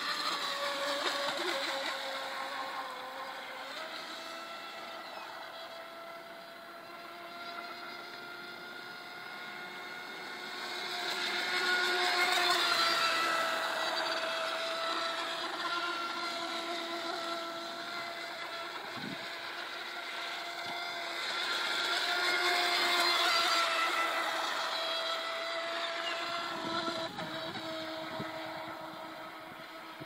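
Aquacraft SV-27 radio-controlled electric boat running flat out, its electric motor and propeller giving a steady high whine with a hiss of water spray. It grows louder as the boat passes closest, about twelve seconds in and again around twenty-three seconds, and fades in between.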